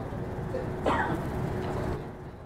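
Low, steady room noise with a faint constant hum, and one short human vocal noise about a second in.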